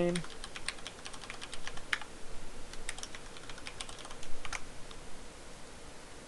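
Typing on a computer keyboard: a quick, irregular run of key clicks as a user name and password are entered, trailing off nearly five seconds in.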